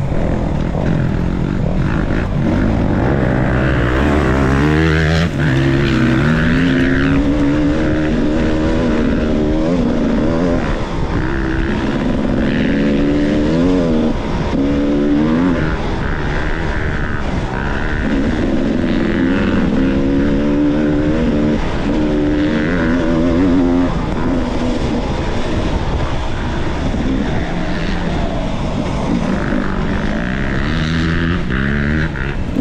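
Off-road dirt bike engine heard from the bike itself, revs rising and falling over and over as the rider accelerates, shifts and rolls off the throttle.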